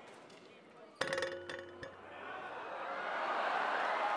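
Basketball striking the metal rim about a second in, a sharp clank with ringing tones, as it wedges between rim and backboard. Arena crowd noise then swells steadily in reaction.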